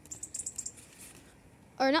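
A hand tapping and brushing stiff, glossy shrub leaves: a quick run of light, crisp ticks and rustles in the first half second or so, then quieter.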